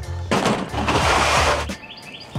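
Hard-shell suitcase wheels rolling across pavement for about a second and a half, over background music with a steady bass line.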